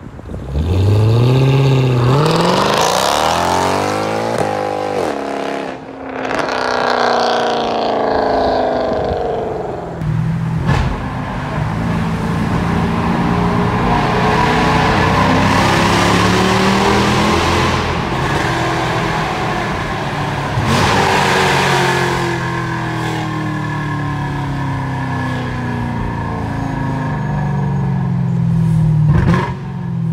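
Mercedes-Benz C63 AMG's 6.2-litre V8 through an Agency Power aftermarket exhaust, launched hard from a standstill: the revs climb sharply through the first gears with short dips at the shifts, then fall in pitch as the car pulls away. From about ten seconds in the V8 is heard again, loud, its revs rising and falling.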